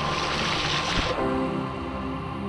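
Background music with shallow stream water rushing loudly close by; the water sound cuts off suddenly about a second in, leaving the music.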